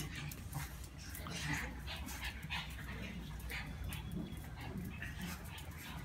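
A group of Brussels Griffons play-fighting, making many short, scattered vocal sounds, with small clicks throughout.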